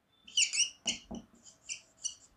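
Felt-tip marker squeaking across a whiteboard while writing: a string of short, high squeaks, five or six strokes in two seconds.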